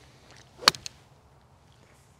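Golf swing with a mid iron: a faint swish of the downswing, then one sharp, loud crack as the clubface strikes the ball, followed a fraction of a second later by a fainter second click.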